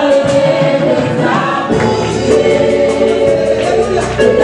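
Gospel worship team singing together in close harmony into microphones, backed by a live band with a steady drum beat.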